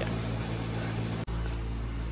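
A steady low mechanical hum, broken for an instant a little past halfway.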